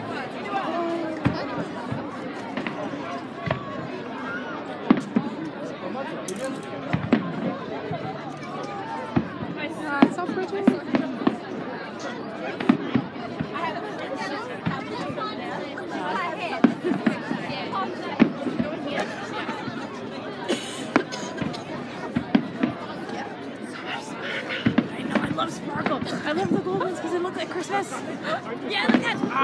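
Aerial fireworks bursting, many bangs and crackles at irregular intervals, over the indistinct chatter of nearby spectators.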